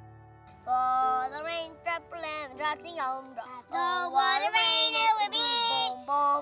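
A young child singing a melody with held, gliding notes, starting about a second in, with instrumental music behind.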